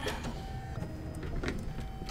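Light clicks and a faint short whir around the needle of a Brother Luminaire Innov-is XP2 embroidery machine as it is rethreaded: the thread had come out of the needle.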